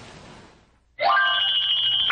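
A brief hush, then about halfway in a bright electronic chime starts suddenly: several high tones held together with a fast, even trill, a transition sting between scenes.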